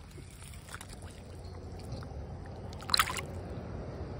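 A small sunfish released into a pond, landing with one short, sharp splash about three seconds in, over a low steady rumble.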